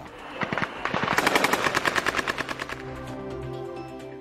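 Rapid automatic gunfire, about ten shots a second, for roughly two seconds, followed by steady held music tones near the end.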